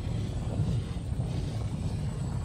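Low, steady rumbling drone from a documentary soundtrack, with no distinct events.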